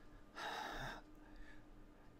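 A man's short, sharp intake of breath close to the microphone, lasting about half a second and starting a third of a second in.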